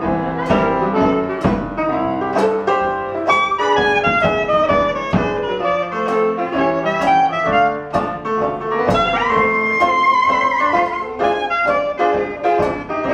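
Traditional New Orleans jazz band playing an instrumental chorus. The clarinet carries the melody over strummed banjo, piano and drums keeping a steady beat, and the clarinet holds one long note about nine seconds in.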